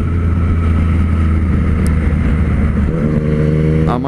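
Triumph Street Triple 765's inline three-cylinder engine running under way at highway speed, heard from the rider's seat over a steady low rumble. About three seconds in, its note shifts to a clearer, higher hum.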